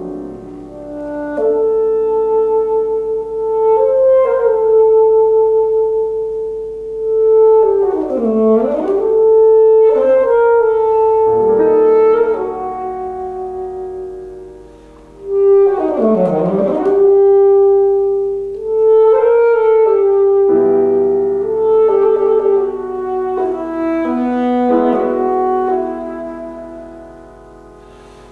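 Alto saxophone playing long held notes over piano accompaniment, broken twice by a fast run that sweeps down and back up.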